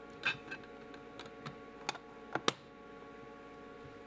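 Light metallic clicks of steel twist drill bits being handled in a drill index case as a bit is picked out of its slot: a handful of small ticks in the first two and a half seconds, the sharpest near the middle, over a faint steady hum.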